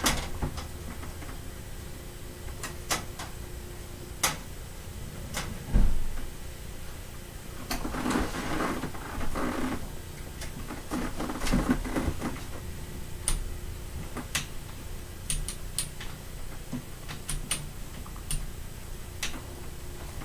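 A row of four fans (a Lasko high-velocity floor fan and Lasko, Pelonis and vintage Holmes box fans) running on low speed, a steady rush of air with a faint motor hum. Over it come scattered sharp clicks and knocks as the speed knobs are turned, with a couple of rustling stretches around the middle.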